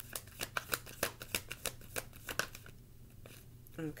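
A tarot deck being shuffled by hand: a quick, irregular run of light card clicks for about the first two and a half seconds, then it stops.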